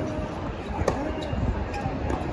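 Tennis ball struck by rackets and bouncing on a hard court during a rally: sharp pops, the clearest about a second in, over the murmur of a stadium crowd and nearby spectators' voices.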